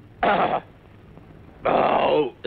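A man's voice: a short exclamation with falling pitch about a quarter second in, then speech starting near the end.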